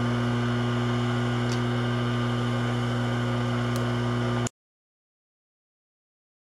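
Steady low electrical hum, with a couple of faint ticks, that cuts off abruptly to complete silence about four and a half seconds in.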